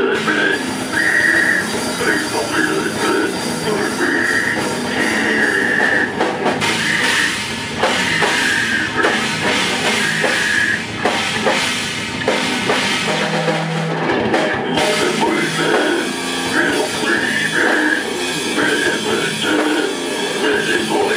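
Slamming brutal death metal band playing live and loud: distorted guitars and a fast drum kit, with the low end dropping out briefly about two-thirds of the way through.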